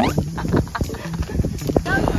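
People talking and laughing, with short clicking sounds among the voices.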